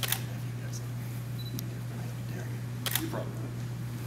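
Camera shutter clicks, several of them: a sharp one at the start, fainter ones in between and a quick double click about three seconds in, over a steady low hum in the hall.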